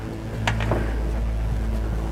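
Boat outboard motor idling with a steady low hum, with a couple of short clicks about half a second in.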